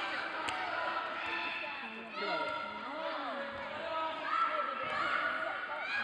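Overlapping voices of children and adults calling out across a large indoor sports hall. A sharp knock comes about half a second in, with a few fainter knocks and thuds from the hard floor.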